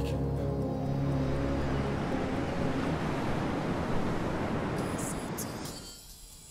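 Sea surf breaking on the shore, a steady rush that swells through the middle and fades away near the end. Under it, held music chords die out after about two seconds.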